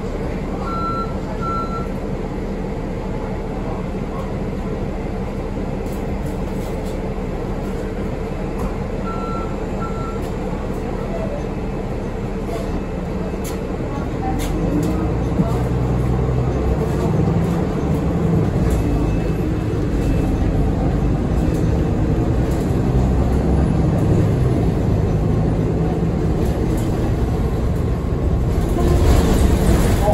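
Cabin sound of a 2015 Nova Bus LFS city bus: a steady engine and road hum that grows louder and heavier about halfway through as the bus gets moving. A short double beep sounds twice, about a second in and again near ten seconds. A brief rush of noise comes near the end.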